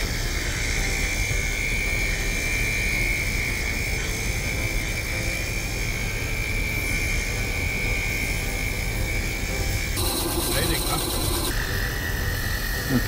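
Bandsaw with a narrow 1/8-inch blade cutting a block of wood: a steady machine hum with a high whine over it, which changes about ten seconds in.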